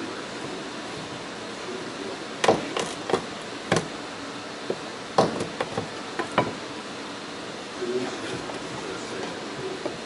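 A wooden stick prying at old plywood floor pieces in a fiberglass boat hull, giving a scatter of about eight sharp wooden knocks and taps through the middle few seconds.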